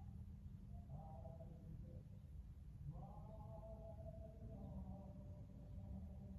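Quiet room tone with a steady low hum, and faint held tones in the background about a second in and again from about three seconds on.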